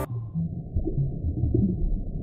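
Underwater ambience sound effect: a muffled, uneven low sound with nothing high in it.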